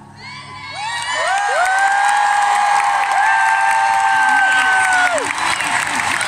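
Live theatre audience cheering and screaming. The noise builds over the first couple of seconds, then holds loud, with long high-pitched screams ringing out over it.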